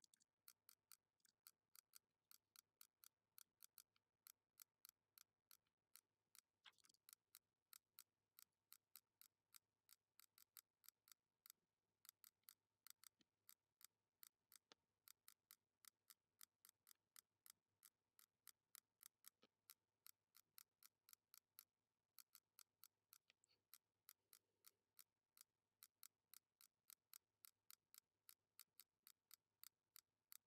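Faint, rapid computer mouse-button clicks, about three or four a second, placing anchor points one by one with the pen tool in sped-up screen-recording footage.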